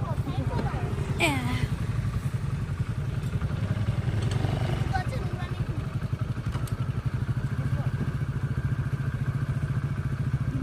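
Motorcycle engine running at low speed close by, a steady low putter throughout, with brief voices about a second in.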